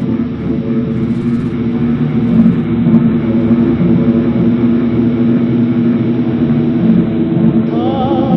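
Ambient experimental music: a dense, steady drone of layered low sustained tones.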